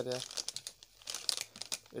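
Plastic parts packets crinkling and rustling as a hand shuffles through them, in uneven bursts that are busiest about a second in.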